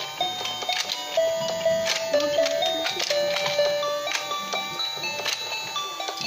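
Battery-powered rotating fishing-game toy playing its simple electronic tune while the plastic fish pond turns, with repeated sharp clicks from the turning mechanism.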